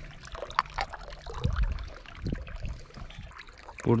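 Water trickling steadily from the end of a hose pipe into a water-filled trough, with a few light knocks as a metal kettle is handled at the pipe.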